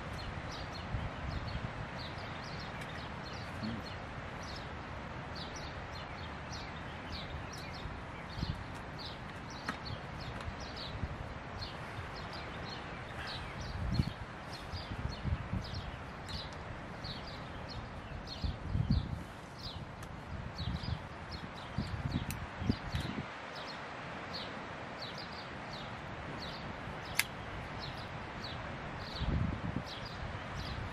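Forest ambience: a bird's short, high chirp repeated about twice a second, steady throughout, over a light hiss of wind in the trees. A few low bumps come through in the second half.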